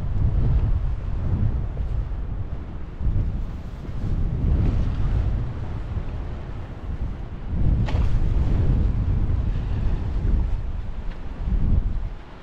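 Strong wind buffeting the camera microphone, a loud low rumble that swells and eases in gusts.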